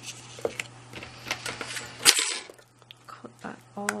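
Double-sided adhesive tape being handled on card stock: small clicks and taps, with one sharp, louder rasp about two seconds in as tape is pulled off the roll.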